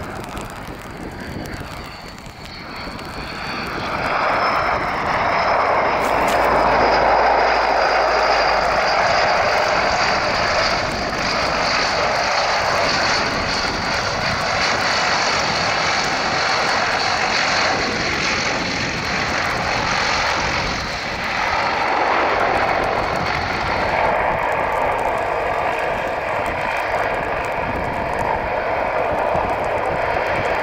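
Transall C-160's two Rolls-Royce Tyne turboprop engines during the landing rollout on the runway. A loud propeller drone with a steady high turbine whine, swelling about four seconds in and staying loud.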